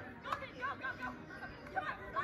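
Indistinct high-pitched girls' voices calling out during a beach volleyball rally, with a sharp smack about a third of a second in.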